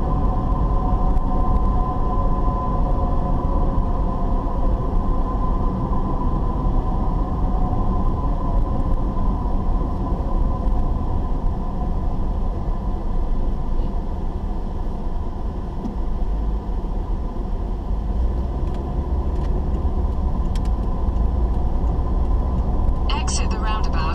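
Steady low rumble of a car's engine and tyres on the road, heard from inside the cabin while driving. A voice starts speaking about a second before the end.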